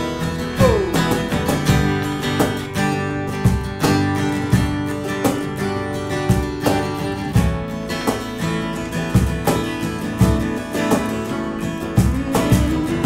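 Live acoustic band playing an instrumental passage: two guitars strummed, with bass guitar and cajón keeping a steady beat.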